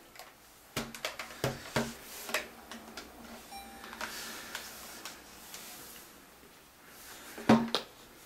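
Clicks and knocks from handling small electronics on a wooden table: a portable tape player and its cable being set down and plugged in, then a handheld TV being picked up. A quick run of clicks comes in the first couple of seconds, a brief faint tone sounds midway, and one louder knock comes near the end.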